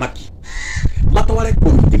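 A man wailing in loud crying cries that break off and start again, louder from about a second in.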